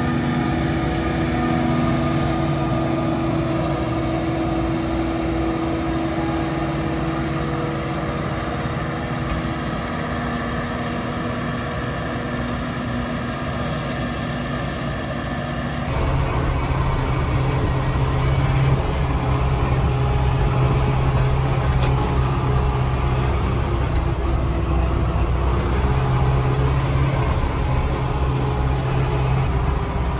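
Steady drone of a forage harvester chopping maize, with the tractor and trailer running alongside it. About halfway through it gives way to the louder, deeper, even running of a turbocharged Ursus C-360's four-cylinder diesel, heard from inside the tractor's cab as it drives.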